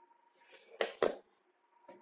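Two short, sharp knocks a quarter second apart, a little under a second in, from a person shifting their body on a floor exercise mat.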